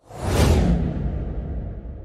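A whoosh transition sound effect: it swells within about half a second, with a deep rumble underneath, then fades out slowly over the next two seconds.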